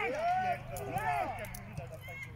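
Men's voices shouting and calling out on the sideline of a football match, in rising and falling cries, over a steady low hum.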